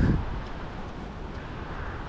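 Wind buffeting the camera's microphone as a steady low rumble, with a brief louder low burst at the very start.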